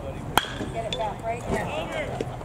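A metal baseball bat hitting a pitched ball: one sharp hit about a third of a second in, with a brief ring after it. Spectators' voices rise after the hit.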